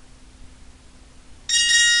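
A bell-like chime sounds suddenly about a second and a half in and rings on with several high tones, over faint hiss before it.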